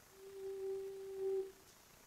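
A steady pitched tone, held for about a second, with a weaker overtone an octave above.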